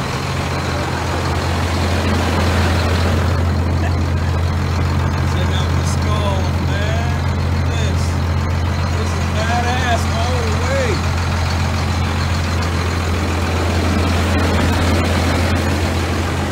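A 1993 Dodge Ram 350's Cummins 12-valve turbo diesel inline-six idling with a steady, even low hum.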